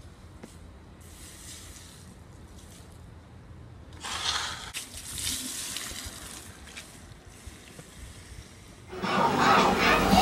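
Bicycle tyres swishing over wet pavement, with a short burst of splashy hiss about four seconds in.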